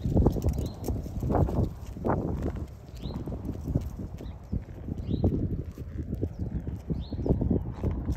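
Footsteps of a person and a dog walking on a concrete sidewalk, an uneven run of soft low steps and scuffs. A faint high chirp recurs about every two seconds.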